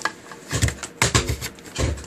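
Phono (RCA) plug being pulled from one output socket on the back of a Sony ST-80F valve-era tuner and pushed into another while it feeds a live amplifier. There are sharp clicks, and twice a short burst of low buzz, about half a second in and near the end.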